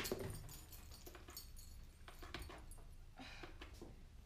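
Faint rustling and light knocks of papers and small objects being handled on a desk, with a brief rustle near the end.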